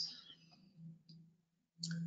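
Faint clicks in a quiet pause between speech, with one small click about a second in.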